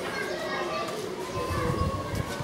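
Children's voices at play, chattering and calling out, with a low rumble near the end.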